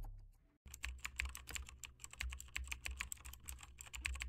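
Faint, rapid, irregular keyboard typing clicks, a typing sound effect over a black text card, starting about half a second in as the tail of the intro music dies away.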